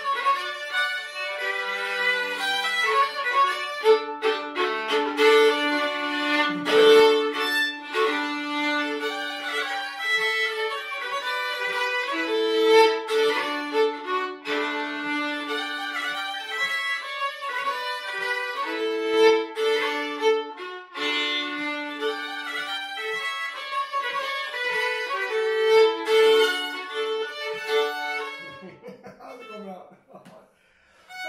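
Two fiddles playing a Swedish folk polska together in unison, with held lower notes under the melody. The tune ends and the playing stops shortly before the end.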